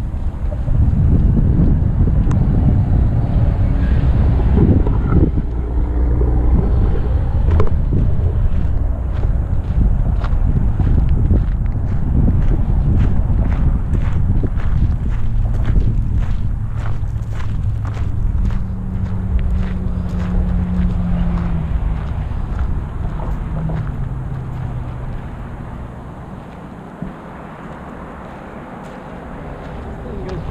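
Wind rumbling on the camera microphone, mixed with road traffic noise and a passing vehicle's hum. Footsteps crunch on gravel in the middle, and the rumble gets quieter near the end.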